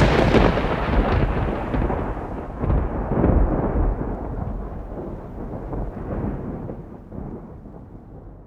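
A thunderclap breaks in suddenly and rolls on in rumbling swells, dying away over about eight seconds.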